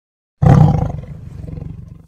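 A big cat's roar used as a logo sound effect. It starts suddenly about half a second in, at full strength, then fades away.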